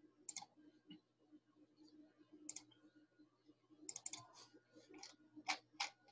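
Near silence with a few faint, scattered computer mouse clicks: one early, one in the middle, a small cluster a little after the middle, and a couple near the end. A faint steady low hum lies underneath.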